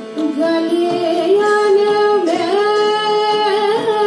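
A woman sings a Hindi devotional song (bhajan) with harmonium accompaniment. After a brief dip at the start she holds long notes that slide from one pitch to the next, climbing about two seconds in, over the harmonium's steady sustained tones.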